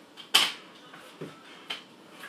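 A sharp knock about a third of a second in, followed by quieter creaks and a small click near the end: handling sounds in a small room.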